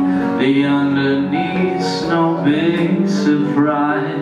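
Live band music: a man sings held notes into a microphone over electric guitar accompaniment, with a wavering, vibrato-like note near the end.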